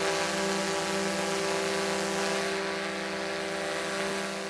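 A steady machine drone, several even tones under a hiss, holding constant and easing off slightly near the end.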